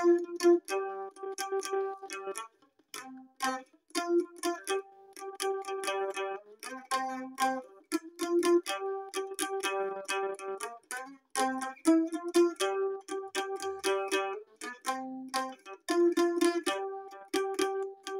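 Mandolin playing a solo melody, its held notes sounded with quick repeated pick strokes.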